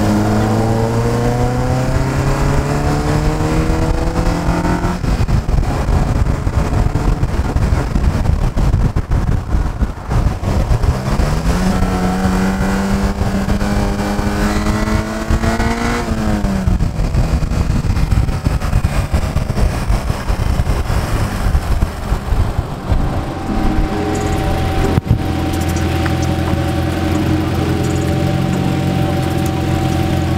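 1999 Honda Civic's engine accelerating hard, its pitch climbing through the first few seconds and again about halfway through, each climb ending in a sudden drop, with heavy wind and road noise. Near the end the engine settles to a steady low idle.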